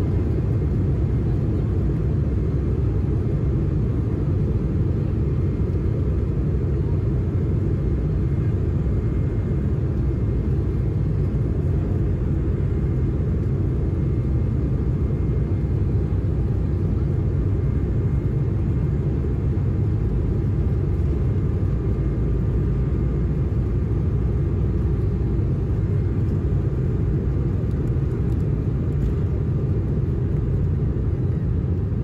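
Inside the cabin of an Embraer E195LR on its takeoff roll: the GE CF34-10E turbofans at takeoff thrust and the wheels rumbling on the runway, a steady loud rumble with faint whining tones above it.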